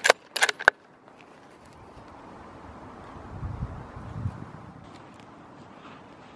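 Bolt of a scoped bolt-action hunting rifle being worked: four sharp metallic clicks within the first second, chambering another round for a follow-up shot at a chamois. A low rumble follows about three to four seconds in.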